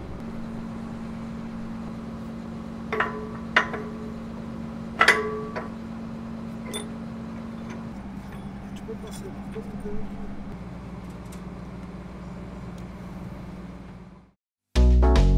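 Steady low hum of machinery running, with three sharp ringing metallic clinks about three, three and a half and five seconds in, and fainter ticks later, from steel crane-boom parts being handled.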